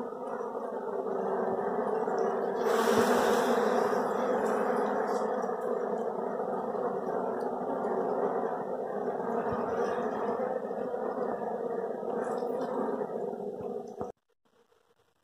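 Dense, steady hum of a honeybee colony buzzing at close range over its opened comb. A brief louder rush of noise comes about three seconds in, and the hum cuts off sharply at the end.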